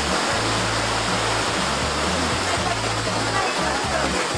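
Steady rush of a shallow mountain stream, with background music carrying a low, slowly changing bass line.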